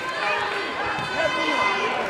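Spectators and corner people talking and calling out at once, several voices overlapping into a steady crowd hubbub in a sports hall.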